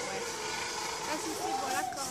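Faint voices in the background over a steady outdoor hum, with a brief high voice about a second and a half in.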